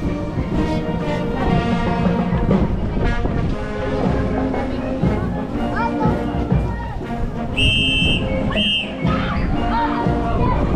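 Brass band music with drums playing, mixed with voices, and two short shrill whistle blasts near the end.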